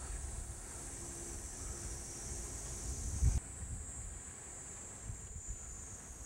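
Steady high-pitched insect buzzing outdoors, with low wind rumble on the microphone. The insect sound drops away suddenly about three and a half seconds in, just after a brief low thump.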